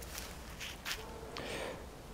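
A few soft footsteps on grass and leaf litter, faint and irregular.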